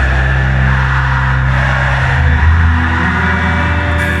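Live rock band holding sustained low chords, the bass note changing a little after two seconds in, with an audience cheering over it.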